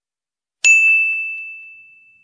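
A single bright bell ding, a notification-bell sound effect, struck once just over half a second in. It rings out on one clear high tone and fades away over about a second and a half, with a few faint ticks early in the ring.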